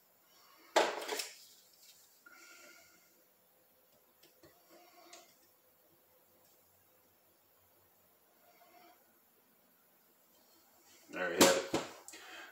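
Faint, scattered light clicks and taps of needle-nose pliers working on small brake-cylinder parts on a metal workbench, with quiet stretches between.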